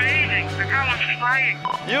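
Excited shouting and cheering from a celebrating race team, high-pitched voices over background music with a low held note that drops away about a second in.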